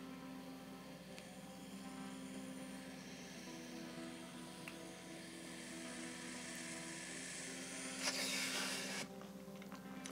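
A long, faint inhale drawn through a wax vape pen, under soft background music with sustained notes; a louder rush of breath comes about eight seconds in.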